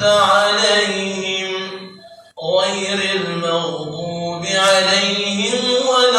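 A man's voice reciting the Quran in melodic chant, holding long drawn-out notes, with a short pause for breath about two seconds in.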